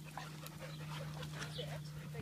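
A dog close by, faintly panting and whining, over a steady low hum.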